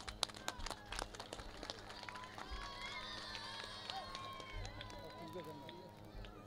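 Indistinct voices of people away from the microphone, with a run of sharp clicks in the first two seconds, over a steady low hum.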